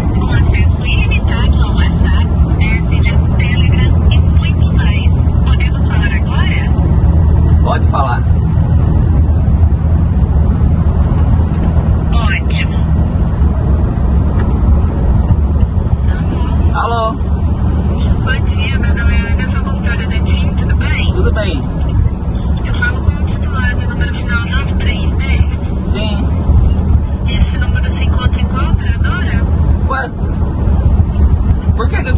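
Steady low drone of a diesel truck's engine and road noise inside the cab while driving, with a voice coming and going over it.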